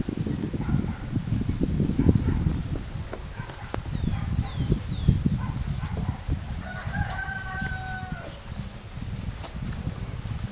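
A rooster crows once, a long call starting about seven seconds in. A few short, high chirps come earlier, over a constant low rumble on the microphone.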